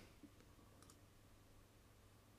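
Near silence, with two faint computer mouse clicks close together just under a second in.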